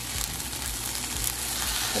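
Egg-white omelet sizzling steadily in an oiled frying pan.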